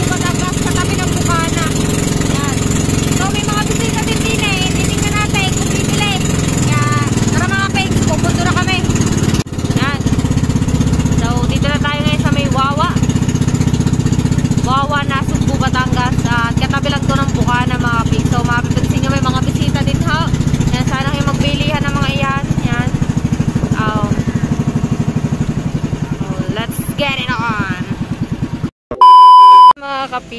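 Motor of a small outrigger boat running steadily under way, with voices talking over it. Near the end the engine sound cuts off abruptly and a short, loud steady beep follows.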